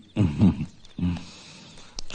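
A man's brief laugh in two short voiced bursts about a second apart, the second one lower and shorter.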